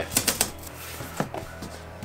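Cardboard shipping box being torn open at its lid: a quick run of crackling rips in the first half-second, then a couple of soft clicks as the flaps are lifted.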